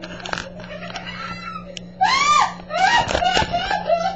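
A person shrieking in a high voice: one loud rising-and-falling squeal about halfway through, then a run of shorter wavering shrieks. Before it, quieter rustling and handling bumps.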